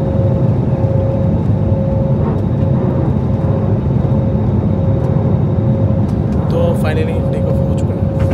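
Airliner cabin noise: a steady, loud drone of engines and airflow with a constant mid-pitched hum running through it. A voice breaks in briefly near the end.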